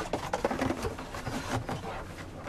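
Rustling and light clicking of a gift box being opened and unpacked by hand.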